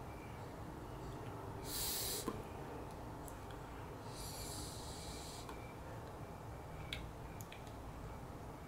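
Faint breathing around a disposable vape pen: two short hissy breaths, the second a draw on the pen lasting about a second and a half. A couple of faint clicks near the end.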